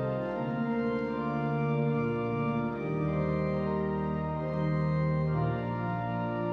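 Pipe organ playing a hymn tune in full sustained chords over a moving bass line, the chords changing every second or so.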